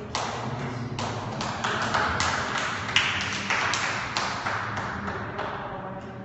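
A rapid, irregular run of sharp taps made by a small group of people, building for about three seconds and then thinning out.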